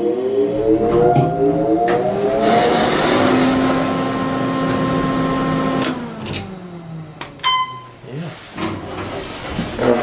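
Otis Series 1 elevator's cab ventilation fan switched on: its motor whine rises in pitch as it spins up and then runs steadily. About six seconds in it is switched off, and the whine falls away as the fan spins down.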